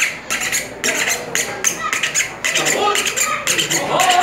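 Homemade güiro, a painted tube scraped with a stick, played in quick rhythmic strokes, about three to four a second.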